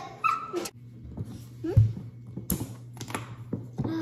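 Electric vacuum sealer's pump starting about a second in and running with a steady low hum, drawing the air out of a mason jar through a hose and jar-sealer attachment. A few sharp clicks and knocks sound over it as the jar and attachment are handled.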